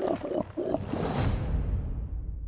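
An animated dragon's voice effect: about four short growling, warbling calls that bend in pitch. About a second in comes a hissing whoosh, then a deep low boom rumbles on as the trailer's music ends.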